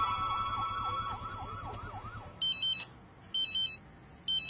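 A siren wailing rapidly up and down, fading out a little after two seconds, while a music cue ends in the first second. Then an electronic phone ring sounds twice, short trilling bursts about a second apart.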